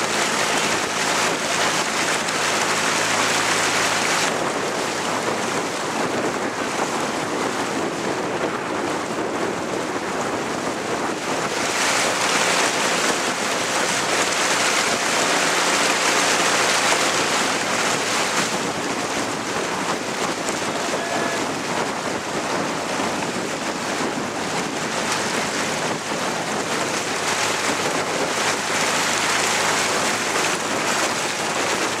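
Steady rush and splash of water from a dragon boat crew's paddles, mixed with wind on the microphone. The noise swells and eases several times, with a faint low hum beneath at times.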